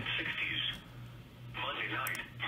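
Indistinct speech in two short stretches, one at the start and one near the end, over a steady low hum.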